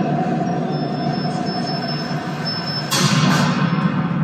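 Soundtrack of a video clip of a reactor core glowing with Cherenkov light, played through the room's speakers: a steady loud rumbling noise with a held mid-pitched hum that fades after a second or so, and a louder rush about three seconds in.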